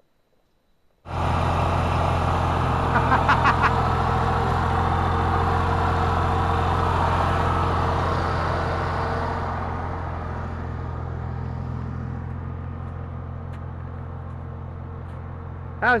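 Pickup truck driving with a small trailer in tow on a rough gravel and snow road: a steady low engine drone with tyre and road noise, heard from the moving vehicle, starting suddenly about a second in and easing off in loudness after about ten seconds. A brief rattle comes about three seconds in.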